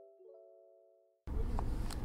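Soft sustained keyboard chords, a new chord struck just after the start, fading out to silence about a second in. Then a sudden cut to a steady low background rumble with a couple of faint clicks, which is louder than the music.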